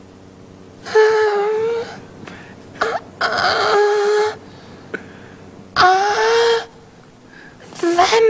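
A man's falsetto moans: three long, high-pitched vocal cries a couple of seconds apart, a comic imitation of a woman's sex sounds.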